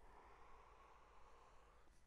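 Near silence, with only a faint breath as a cloud of vapour is exhaled after a draw on the vape.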